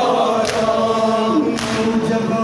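A noha lament sung by a group of men's voices in unison, with hand slaps on chests (matam) keeping time about once a second, twice here.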